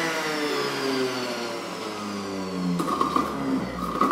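Electric centrifugal juicer running while celery, cucumber and aloe vera are pushed down its feed chute. The motor's whine sinks slowly in pitch as it takes the load, changing about three seconds in.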